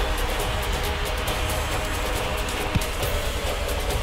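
Dramatic background music with held notes over a low rumble, and one sudden thud about three-quarters of the way through.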